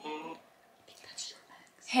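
The end of a phone's ringing tone over the speakerphone, a steady tone that cuts off just after the start, followed by faint whispering.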